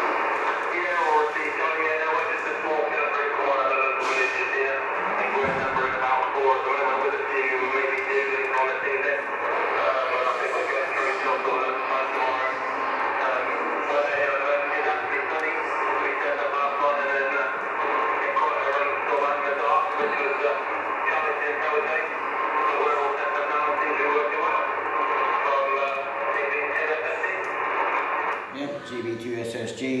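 A distant amateur station's voice coming in over HF single-sideband through the Yaesu FT-1000 transceiver's loudspeaker: thin, narrow-band speech with static noise under it, ending a second or so before the local operator replies.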